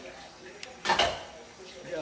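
A brief clatter of hard objects being handled, about a second in.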